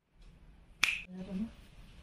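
A single sharp click a little under a second in, ringing briefly, followed by faint low sounds.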